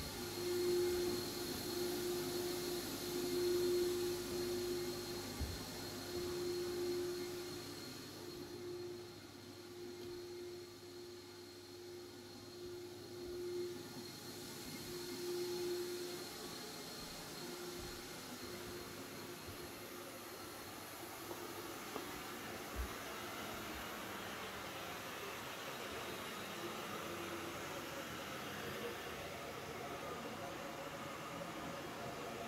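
Carpet-drying air mover fan running with a steady hiss and a wavering hum, which fades out about halfway through.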